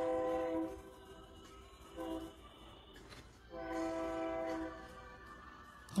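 A horn sounding three times at a steady pitch: a blast of about a second, a short one, then another of about a second.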